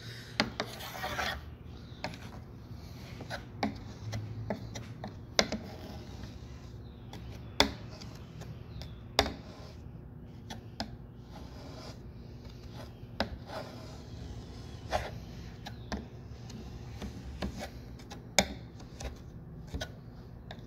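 Metal putty knife scraping and tapping on a wooden window sash while pressing glazing putty into the meeting-rail groove: irregular sharp clicks, with a longer scrape about a second in.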